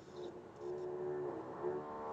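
A neighbour's power tool running through the wall, a steady whine in two stretches with a short break between, heard over the video chat's audio.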